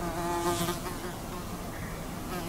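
A steady buzzing hum that fades over the first second, leaving low even room noise in a quiet hall with no one speaking.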